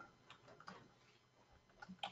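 Near silence with a few faint computer keyboard keystrokes, scattered taps about half a second in and again near the end.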